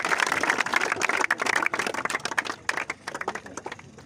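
Crowd applauding: many hands clapping densely, thinning to a few scattered claps and dying away in the last second.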